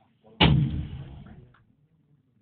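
A single loud artillery boom from a 105 mm L118 Light Gun fire operation. It starts suddenly about half a second in and dies away over about a second.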